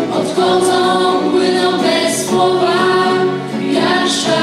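A mixed group of young singers, girls and boys, singing a song together in long held notes, accompanied by acoustic guitar.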